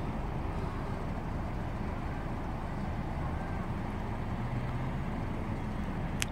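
Steady low outdoor background rumble, unchanging in level, with a faint hum near the middle.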